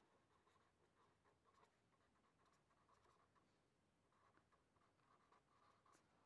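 Very faint scratching of a marker pen writing on paper, barely above silence.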